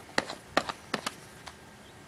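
Plastic paint cup being screwed onto the metal paint inlet of an HVLP spray gun: a handful of light clicks and taps, mostly in the first second, then quiet handling.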